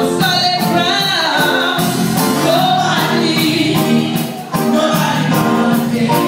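Gospel choir singing with band accompaniment, drums keeping a steady beat under the voices.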